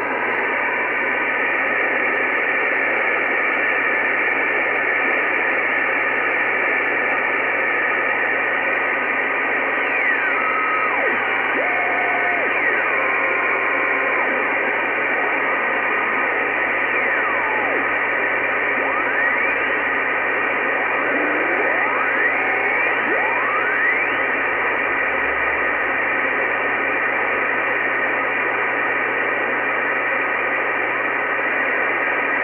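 Icom IC-R8500 receiver in upper-sideband mode on the 2-metre band, giving a steady hiss of band noise as the tuning dial is turned. Through the middle stretch several faint whistling tones sweep up and down in pitch: weak carriers being tuned across while searching for the XW-2C satellite's signals.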